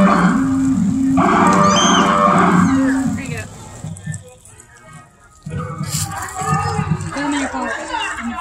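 A loud, low horn sounding in long held notes that step between two pitches, breaking off about three seconds in; scattered voices follow in the last seconds.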